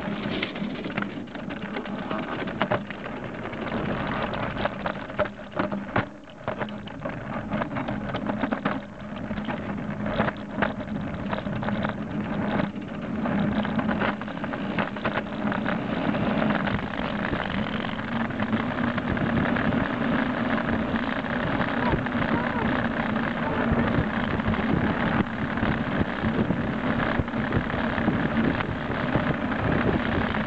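Burley bicycle trailer rolling along the road behind a bike, with rattles and knocks from the trailer and a rushing road-and-wind noise. The rushing grows louder and steadier about halfway through as the trailer speeds up.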